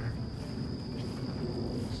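A steady high-pitched insect trill, typical of crickets, over a low outdoor rumble.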